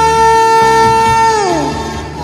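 A woman singing one long held note over a karaoke backing track; the note slides down and stops about one and a half seconds in, leaving the backing music.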